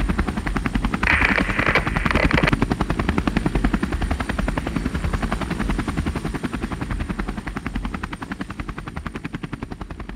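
Helicopter rotor blades beating in a rapid, even pulse, with a short noisy burst about a second in; the beating fades out gradually over the last few seconds.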